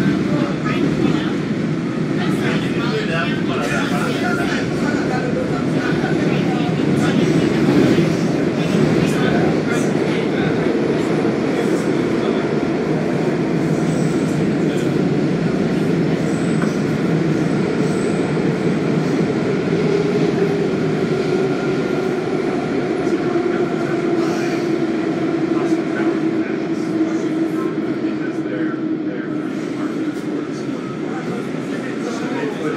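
Inside a WMATA Kawasaki 7000-series Metro railcar running through a tunnel: the steady rumble of wheels on rail. About two-thirds of the way in, a motor whine starts to fall steadily in pitch as the train slows into a station.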